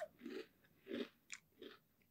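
A person chewing a mouthful of vanilla ice cream topped with Cinnamon Toast Crunch cereal: a few faint, soft chews with small mouth clicks.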